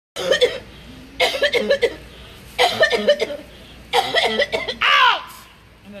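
A woman retching and coughing into a plastic bag in four harsh bursts a little over a second apart, followed by a loud, falling vocal cry.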